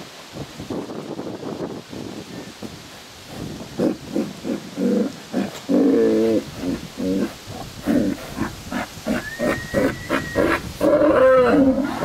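Hereford bulls bellowing over and over in short, moaning calls from about four seconds in, loudest around six seconds. They are bellowing at the spot where offal from a slaughter was washed, which the owner takes for their reaction to the smell that still lingers there.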